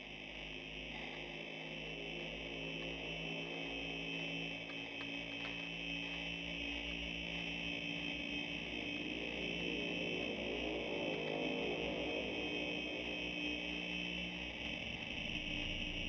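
Dark ambient drone music: sustained low tones under a steady high, hissing band, slowly growing louder.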